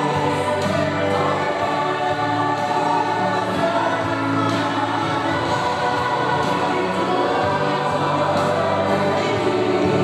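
A group of voices singing a gospel song, steady and continuous.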